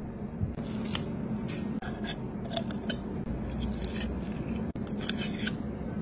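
Hand food preparation on a large snail and its shell: a run of short, crisp clicks and snips at an uneven pace, over a steady low hum.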